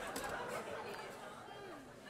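Faint audience murmur and chatter in a hall, fading over the two seconds.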